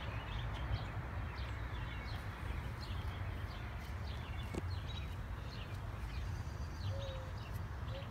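Outdoor background: small birds chirping in short, high calls every second or so over a steady low rumble.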